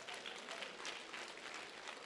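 Congregation applauding: many hands clapping in a dense, fairly faint patter that slowly eases off.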